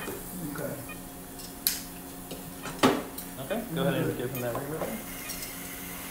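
Steel surgical instruments clinking and clicking against each other, with two sharp metallic clicks about a second apart, over a steady low equipment hum.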